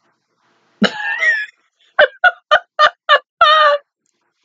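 A woman laughing: a short burst about a second in, then a run of quick "ha"s about three a second, ending in a longer drawn-out one.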